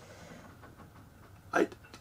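A pause in a man's speech with only faint room tone, broken about one and a half seconds in by a short catch of breath and the start of his next word.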